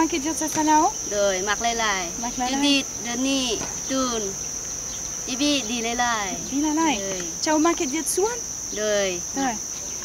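Insects droning steadily at one high pitch, with a woman talking over it.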